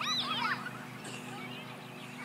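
A young child's high-pitched shout or squeal in the first half-second or so, followed by fainter children's voices, over a steady low hum.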